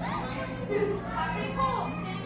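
Young children's voices in a gym hall: high-pitched calls and chatter with rising and falling pitch, over a steady low hum.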